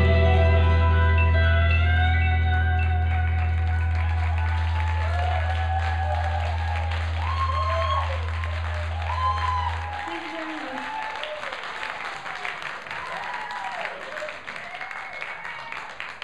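A live band's final chord rings out and slowly fades, with a low bass note held until it stops about ten seconds in. The audience claps and cheers over it.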